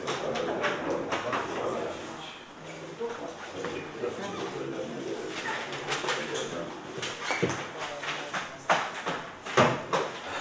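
Low murmur of voices in a council hall, with paper ballots rustling as they are taken from a ballot box and unfolded for counting. Sharp clicks and knocks come thicker in the second half, the loudest near the end.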